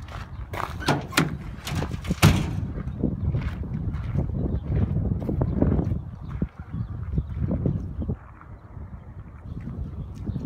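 Ford F-350 Super Duty pickup's tailgate being opened: a quick run of sharp clicks and clanks as the latch releases and the gate drops onto its support cables, the loudest about two seconds in, then a few seconds of low rumbling.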